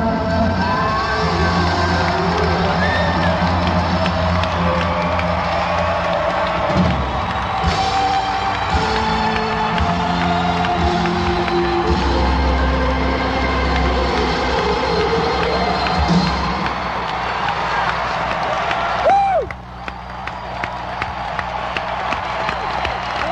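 Live rock band with piano, bass and drums playing the closing bars of a song, heard from within a cheering arena crowd. A little past three-quarters of the way through, the music stops, leaving the crowd cheering, whistling and clapping.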